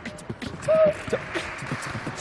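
Beatboxing: quick rhythmic mouth-made beats, with a short voiced note about three-quarters of a second in that is the loudest sound.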